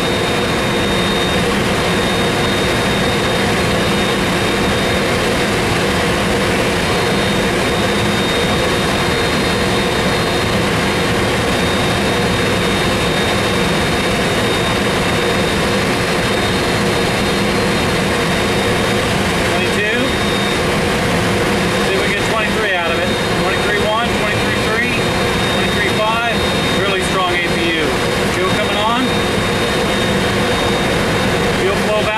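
GE CF6 turbofan engine being started on an Airbus A300-600, heard from the cockpit: a steady rush of air with a constant high whine as the engine turns over during its start sequence.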